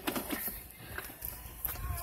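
A few light knocks and rustles as a phone is handled and swung around inside a car cabin, over a steady low rumble.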